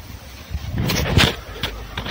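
A few clinks and knocks of metal hand tools being shifted in a cluttered pile, over a low steady rumble.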